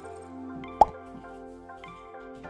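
Soft background music with sustained notes, and one short, sharp pop a little under a second in.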